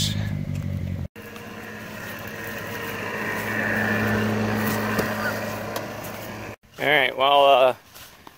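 Car engine running: a steady hum for about a second, then after a break a car engine hum that swells over a few seconds and fades again. A man's voice comes in near the end.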